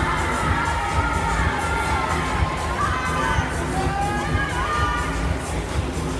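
Young spectators and teammates shouting and cheering swimmers on during a race, many voices overlapping, with music under it.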